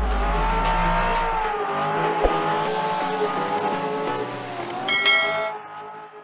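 Porsche 911 GT3 (997.2) flat-six engine running at fairly steady revs, its pitch drifting gently, then fading out near the end.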